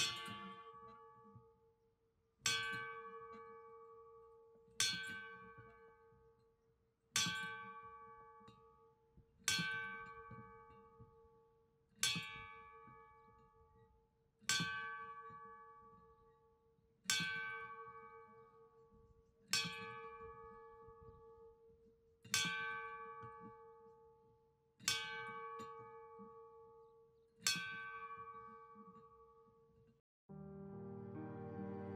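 Brass bell on a wooden stand tolled twelve times, one stroke about every two and a half seconds, the clapper pulled by its rope lanyard. Each stroke rings out and dies away before the next: a memorial toll, one for each of twelve dead.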